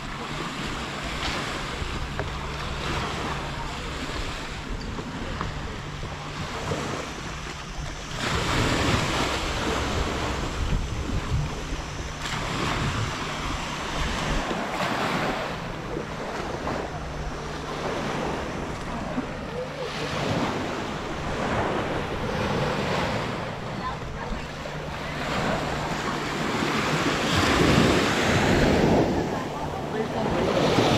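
Small sea waves washing onto a sandy beach, swelling and fading every two to three seconds, with wind buffeting the microphone.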